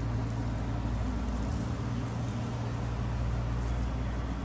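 A steady low hum with an even background hiss, holding level throughout.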